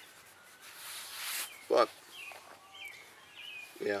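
A small bird chirps a few times in the background. About a second in there is a brief rustling swell of noise, and just before two seconds a short vocal sound from the man.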